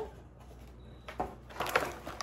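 A kit being handled in its cardboard box and plastic packaging. It is quiet for about the first second, then comes a run of light rustles and clicks.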